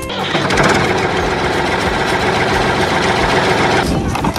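Steady, dense mechanical rattling like a small engine running, starting just after the start and cutting off abruptly near the end.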